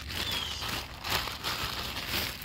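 Plastic packaging crinkling and rustling in hand, with a few louder crackles. A bird gives one short falling chirp near the start.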